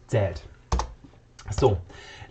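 Computer keyboard and mouse clicks while the last word of a block's text is typed in, with one sharp click a little before halfway.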